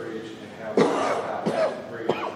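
A person coughs twice, less than a second apart, the first cough the louder.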